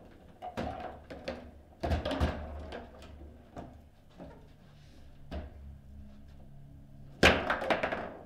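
Table football game in play: a series of sharp plastic knocks and clacks as the ball is struck by the figures and the rods are worked, with the loudest hard strike about seven seconds in.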